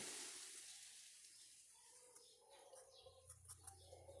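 Near silence: faint room tone, with a few faint ticks in the second half.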